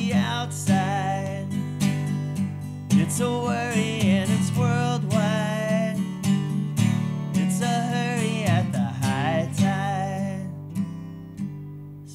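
Acoustic guitar strummed in a country-folk song, with a man singing over it; the playing eases off and gets quieter near the end.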